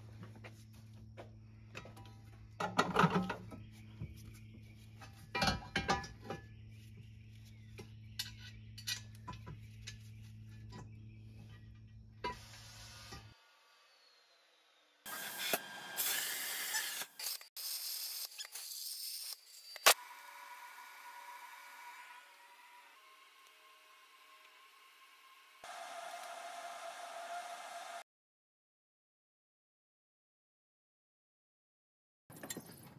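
Metal exhaust-manifold parts clinking and knocking over a steady low hum, followed by a harsh burst of metalworking noise from fabricating the manifold and then a steady high whine that shifts pitch a couple of times.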